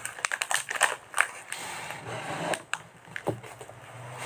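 Handling noise: irregular clicks, knocks and crackling as objects and packaging are moved about and opened.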